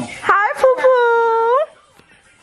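A baby's drawn-out, high-pitched wail lasting over a second, gliding up at the start, holding steady, then rising again just before it stops.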